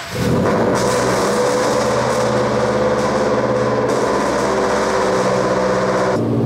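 Scion FR-S's 2.0-litre flat-four boxer engine catching on a cold start, with a brief flare as it fires, then running at a steady cold-start high idle.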